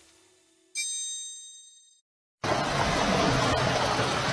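A bright chiming ding from the logo sting strikes about a second in and rings out over about a second with a high shimmer, followed by a short silence. About two and a half seconds in, a louder steady rushing noise starts and runs on.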